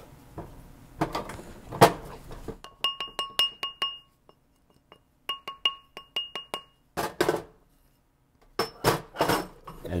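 A mallet taps a bezel cup on a steel bezel mandrel to shape it round. Two quick runs of light taps come in the middle, each tap with a brief metallic ring from the mandrel, and a few sharper strikes come before and after.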